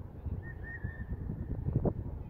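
Wind buffeting the microphone in uneven gusts, with a thin, wavering high whistle-like tone for about a second starting half a second in.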